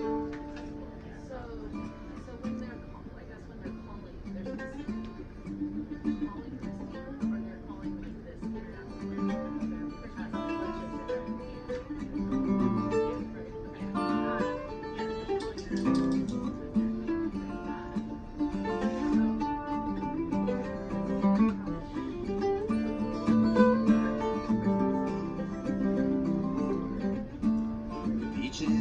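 Acoustic guitar and a second plucked string instrument improvising an instrumental intro over a simple two-chord progression, growing gradually louder.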